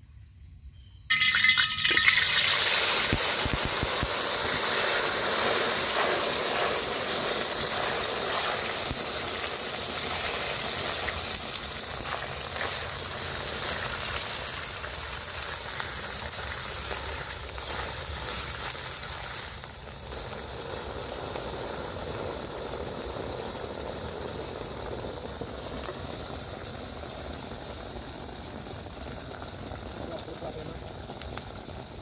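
Dung beetles deep-frying in hot oil in a steel wok: a loud sizzle starts suddenly about a second in, slowly dies down, then drops to a quieter steady sizzle about two-thirds of the way through.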